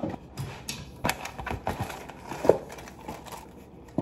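Crinkling of the plastic inner bag of a box of buttermilk pancake mix as it is opened and handled, with scattered clicks and knocks of kitchen things being moved; the loudest knock comes about two and a half seconds in.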